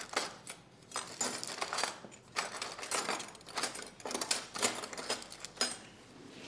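A knife scraping a spread across crisp toasted bread: a run of short, irregular rasping strokes.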